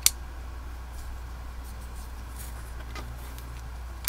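Small model-kit head parts being pressed together by hand: one sharp click at the start, then a few faint ticks of handling, over a steady low hum.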